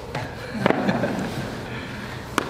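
A small group laughing and murmuring, with a sharp knock about two-thirds of a second in and a few lighter clicks around it.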